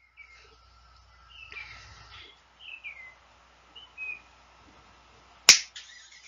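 A single sharp finger snap near the end, the cue for students to say the sound aloud. Before it there is only a faint background with a few short, faint chirps.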